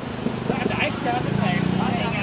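Indistinct voices of people talking over steady street background noise, with a low hum in the second half.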